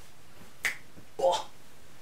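A single sharp finger snap about two-thirds of a second in, followed by a short vocal sound.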